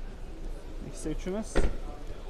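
A car's rear door being shut with a single solid thud about one and a half seconds in, preceded by a brief voice.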